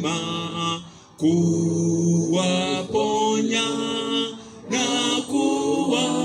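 Unaccompanied hymn singing in slow, long-held phrases, with brief breaks between lines about a second in and again past the middle.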